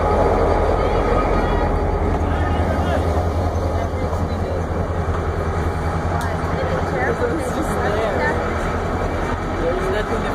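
Diesel locomotive engine running with a steady low drone as it passes close alongside, growing a little fainter as it draws away. Passengers talk over it.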